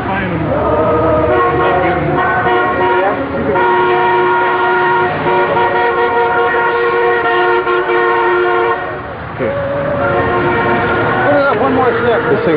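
A group of people singing slowly in long held notes, several voices at once, with a short break about nine seconds in.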